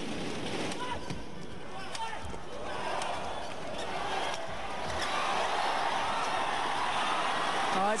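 Badminton rally: a shuttlecock struck back and forth by rackets in an indoor arena, with crowd noise that swells from about three seconds in as the rally goes on.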